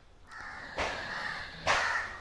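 A crow cawing twice with harsh calls, the second shorter and louder.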